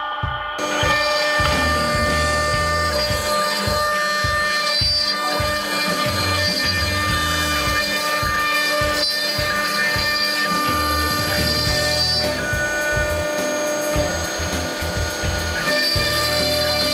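Background music with a steady beat, laid over a CNC router's spindle and bit cutting into wood.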